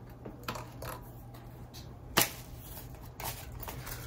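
Plastic pickguard being handled and laid onto an electric guitar body: scattered light clicks and taps, with one sharp click about two seconds in.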